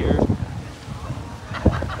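Wind buffeting a phone microphone as a low, steady rumble, with one sharp thump near the end.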